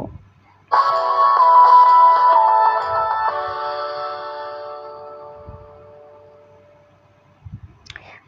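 A short musical jingle with a bright, chime-like tone: a few quick notes start abruptly just under a second in, then held tones fade away slowly over the next few seconds.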